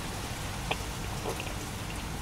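Quiet chewing of grilled chicken nuggets picked up close on a lapel microphone, with about three faint wet mouth clicks, over a steady hiss and low rumble.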